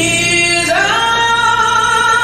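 A woman singing into a handheld microphone, holding long notes, with a slide up in pitch about two-thirds of a second in.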